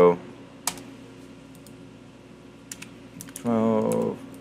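A few scattered computer keyboard keystrokes as numbers are typed into a spreadsheet, over a steady low hum, with a short wordless vocal sound near the end.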